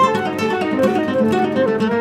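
Instrumental trio of nylon-string guitar, piano and flute playing a fast melody. The guitar leads with quick plucked runs of notes over the piano's chords.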